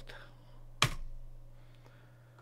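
A single sharp keystroke on a computer keyboard a little under a second in: the Enter key running a typed terminal command. A couple of faint key clicks follow near the end.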